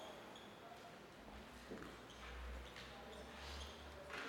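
Very faint felt-tip marker strokes writing on a whiteboard, a few short scratchy smudges, over a low steady room hum that starts about a second in.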